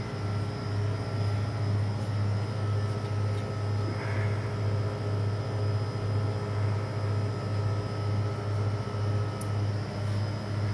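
Steady low hum of a store's refrigerated display coolers, pulsing slowly and evenly, with faint higher steady tones above it.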